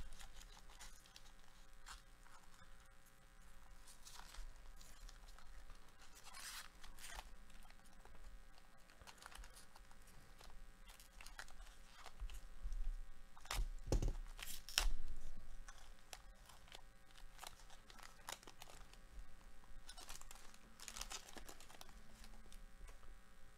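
Foil wrappers of Donruss basketball card packs being torn open and crinkled by hand, in a run of crackling bursts, the loudest about fourteen seconds in.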